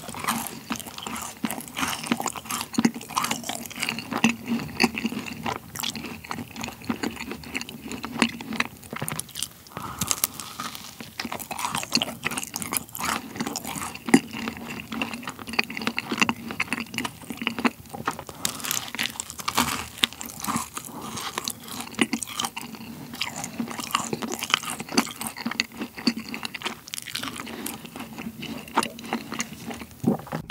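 Close-miked biting and chewing of a chocolate shell-shaped macaron, thick with chocolate cream: a steady run of small crisp crunches from the shell and wet mouth clicks.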